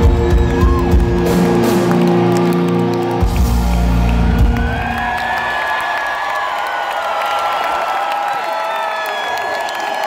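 Live rock band sounding a loud, held final chord, stopping about four and a half seconds in, with crowd cheering over it. The cheering carries on alone after the band stops.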